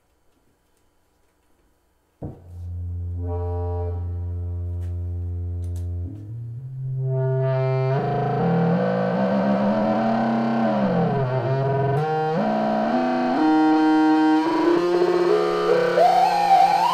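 Keyboard synthesizers played live: after about two seconds of near silence, a low sustained note comes in suddenly. Higher notes and slides up and down in pitch then layer on, building into a fuller and louder synth line.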